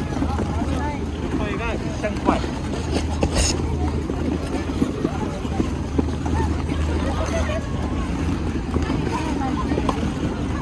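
Public ice rink crowd: many people chattering in the background while skate blades scrape and glide on the ice, over a steady low rumble.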